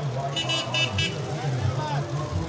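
A vehicle horn sounding three short, quick toots, over the steady murmur of a street crowd.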